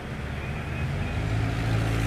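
A vehicle engine idling with a steady low hum, which gets a little louder about a second in.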